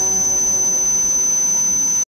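Noise music: a steady piercing high tone held over a hiss, with a fading chord of lower pitched tones beneath it, all cutting off suddenly at the end.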